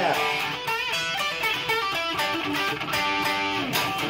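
Hollow-body electric guitar playing a short instrumental passage between sung lines, with strummed chords and picked notes.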